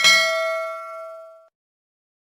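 Notification-bell chime sound effect of a subscribe animation: one bright ding with several ringing tones that fades away and cuts off suddenly about a second and a half in.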